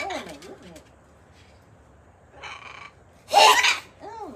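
Pet parrots calling: a wavering, falling call just after the start, then two harsh screeches, the second and loudest about three seconds in.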